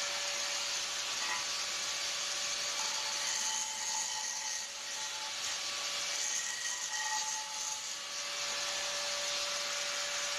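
Angle grinder running at full speed with its disc grinding on a steel plate: a steady, harsh hiss over a constant motor whine.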